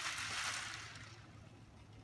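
Plastic polydensity bottle of salt water, isopropyl alcohol and beads being shaken: liquid and beads sloshing inside, fading out over the first second or so as the shaking stops.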